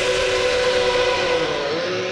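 Racing car engine held at a steady high note over a rushing noise, dipping briefly in pitch near the end.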